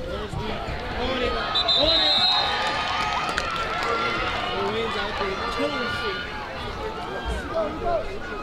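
Indistinct shouting and calling from many voices on and around a football field, with a short, shrill referee's whistle about two seconds in as the play is blown dead.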